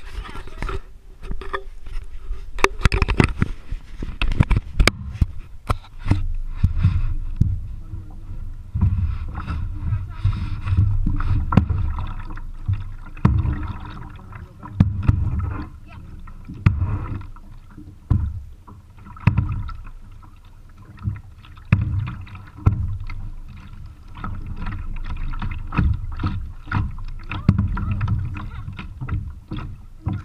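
Kayak paddling picked up by a chest-mounted camera: many irregular knocks and clicks from the paddle and plastic hull over a muffled low rumble of water and movement that swells and fades with the strokes.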